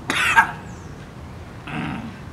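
A person coughs once, sharply and loudly, then makes a shorter, weaker throaty sound near the end.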